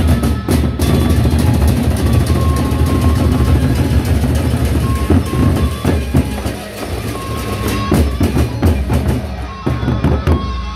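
Gendang beleq ensemble playing loud: large double-headed Sasak barrel drums beaten in a fast, dense rhythm with cymbal strikes over them. The playing thins briefly between about six and seven seconds in, then picks up again.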